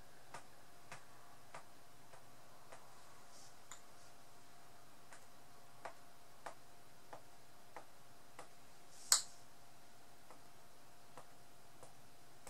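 Faint regular ticking, about one tick every 0.6 seconds, over a faint steady hum, with one brief hiss about nine seconds in.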